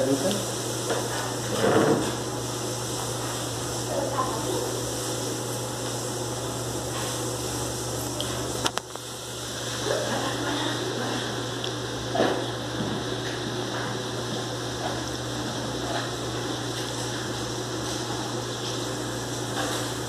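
Miniature pinscher puppies playing, giving a few short growls and yips, over a steady background hum and hiss.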